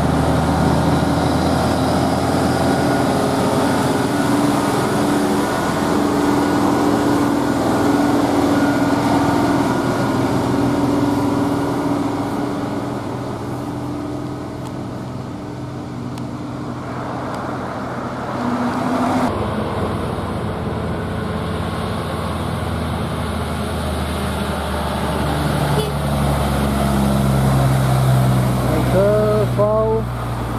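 Heavy diesel truck engines on the road. A Hino tractor unit hauling a container trailer runs past with a steady engine drone and fades away. Later another truck's engine grows louder as it approaches near the end.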